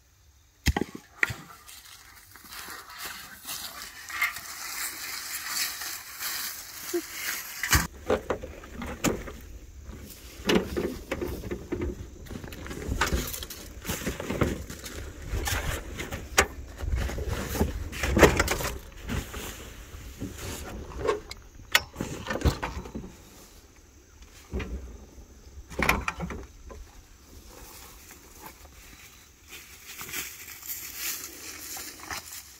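Camping gear being handled and unloaded from a pickup truck's bed: irregular knocks, thumps and rustling of bags and equipment.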